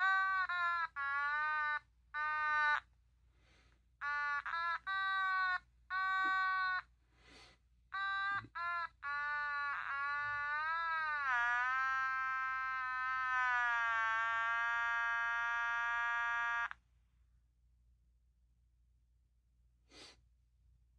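An otamatone playing a melody: a run of short separate notes, some with small downward pitch slides, for about eight seconds. It then dips in pitch and slides back up into one long held note of about five seconds that cuts off sharply.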